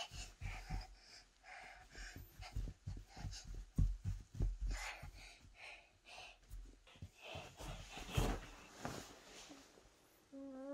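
Soft, irregular thumps and rustling as a toddler moves about on a mattress and its bedding, with close breathing.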